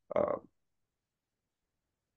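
A man's brief hesitation sound, "uh," in the first half-second, then dead silence.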